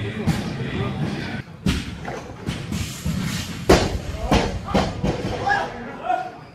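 Several heavy thumps of barbells and weight plates landing in a weightlifting gym, the loudest a little past the middle, over background voices.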